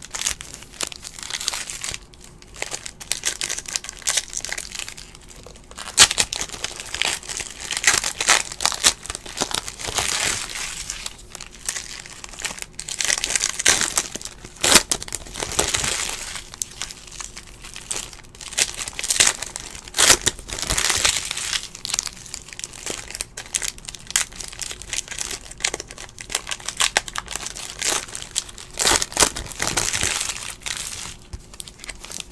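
Foil trading-card pack wrappers crinkling and tearing as packs of basketball cards are ripped open and handled, an irregular crackle throughout.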